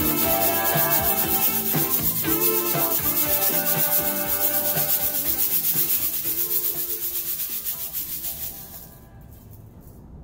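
LP Torpedo Shaker, a long stainless-steel tube shaker, shaken in a steady, even rhythm over a backing recording of a pop song. Both fade out together, and the shaker stops about nine seconds in, leaving the song faint.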